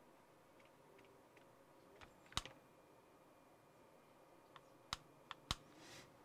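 Faint, scattered clicks and taps as a hand handles wired RC electronics submerged in a clear plastic bowl of water: about six short ticks, the loudest about two and a half seconds in and a few more close together near the end.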